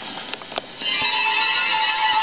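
A gramophone record starting: needle clicks and crackle from the record surface, then a little under a second in, light orchestral music begins to play.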